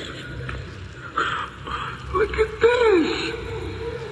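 Sampled film dialogue: a voice making a few short, unworded calls, the clearest rising and falling near the end, muffled, with a steady low hum underneath.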